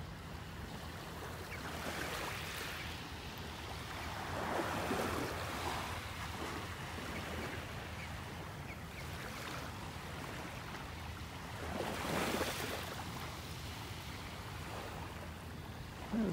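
Small, gentle waves lapping at the edge of a shell-strewn beach: a soft steady wash of water with two louder swells, about four and twelve seconds in.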